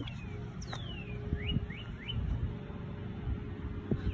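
A bird calling: one falling whistle about a second in, then three quick rising chirps, over a low steady rumble.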